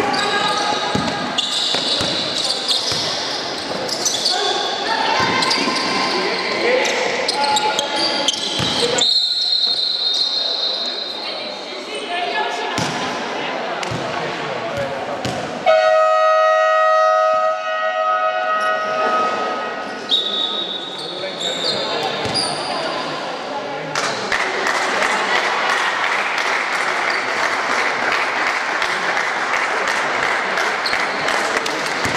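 A basketball bouncing on the court in a large echoing sports hall, with players' voices. A few seconds past the middle, a scoreboard horn sounds one steady note for about three seconds, marking a stoppage in play. Near the end, a steady rush of crowd noise.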